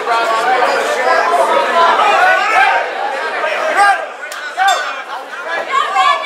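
Crowd of spectators chattering and calling out, many voices overlapping.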